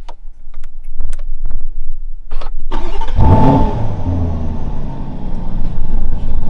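Lamborghini Urus twin-turbo 4.0-litre V8 being started from the centre-console start button: a few clicks, then about three seconds in the engine fires with a short loud flare and settles to a steady idle.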